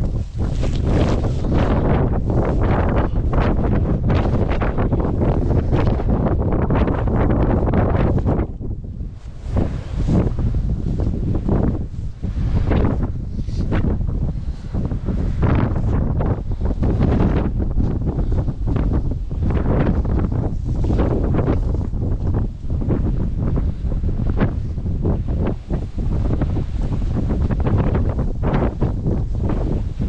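Strong wind buffeting the camera microphone in irregular, heavy gusts, with a brief lull about eight seconds in.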